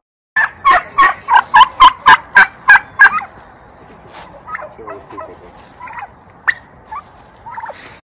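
Domestic tom turkey gobbling loudly: a rapid run of about a dozen notes, about four a second, over the first three seconds. A few fainter short calls follow.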